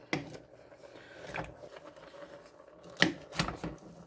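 Wooden spoon being worked into a brim-full stainless steel pot of raw cubed potatoes and stew vegetables: mostly quiet, with a faint knock early and a few louder knocks and scrapes about three seconds in as the stirring begins.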